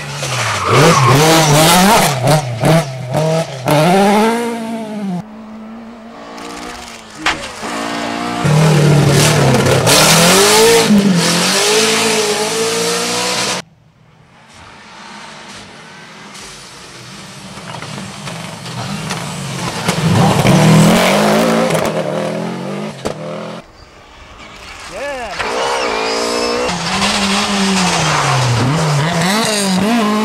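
Rally car engines revving hard in a run of short clips. Each engine note climbs and drops repeatedly through gear changes and lift-offs, and the sound cuts off abruptly between clips.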